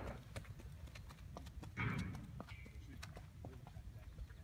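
A mustang's hooves stepping, irregular clicks and thuds, with a brief louder sound about two seconds in.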